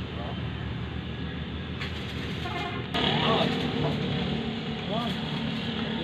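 A steady low mechanical hum with indistinct voices over it, growing louder from about three seconds in.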